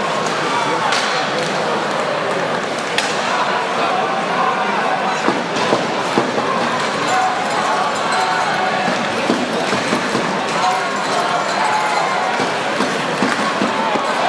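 Crowd in a hockey arena: a dense, steady murmur of many voices talking at once, with occasional sharp knocks and clinks cutting through.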